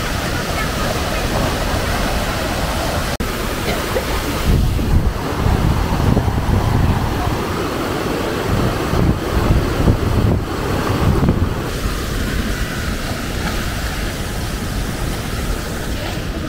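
Düden Creek rushing steadily over a low ledge of white-water rapids. Wind buffets the microphone in low gusts from about four to twelve seconds in, and there is a momentary break about three seconds in.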